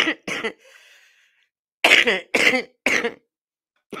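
A person coughing in short fits: two coughs at the start, then three more in quick succession about two seconds in.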